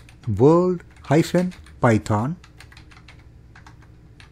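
Typing on a computer keyboard: a quick run of key clicks, clearest in the second half after the voice stops.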